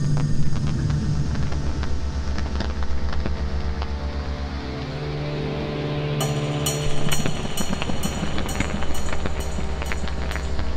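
Live electronic music played on synthesizers and a pad controller: a low pulsing bass line under held synth tones. About six seconds in, a crisp hi-hat-like tick joins at about two to three ticks a second.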